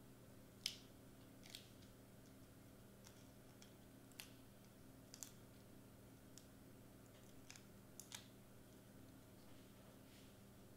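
Faint, scattered light ticks and clicks from fingers peeling backing off small adhesive foam squares and pressing them onto cardstock hearts, over a steady low room hum.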